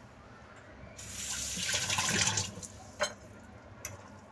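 A rushing, water-like hiss that swells about a second in and fades out over about a second and a half, followed by two faint clicks.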